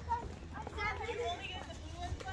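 Children's voices chattering and calling faintly in the background, with no clear words.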